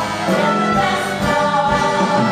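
An ensemble of voices singing together in a musical-theatre song, with instrumental accompaniment underneath.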